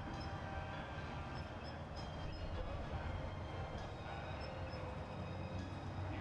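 A steady low rumble with faint constant tones above it, unchanging throughout.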